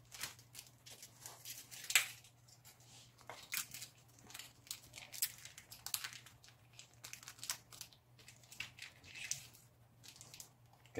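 Small plastic instant-noodle seasoning sachets being handled and torn open in the fingers: a scatter of short crinkles and crackles, the loudest about two seconds in. A faint steady low hum lies underneath.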